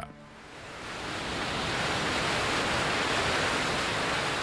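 Flash floodwater rushing down a rock gorge: a steady rushing noise of pouring water that swells in over the first second or two.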